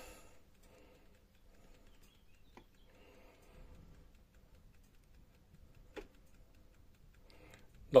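Near silence while the diesel's glow plugs preheat, before cranking: only a faint low background and two small clicks, one about two and a half seconds in and a sharper one about six seconds in.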